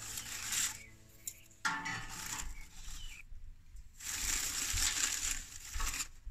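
Crumpled paper crinkling and rustling as it is stuffed by hand into the firebox of a small steel wood stove, in three bursts, the last and longest near the end.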